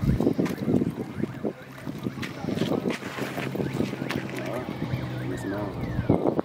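Indistinct voices talking in the background, with wind on the microphone and a low steady hum.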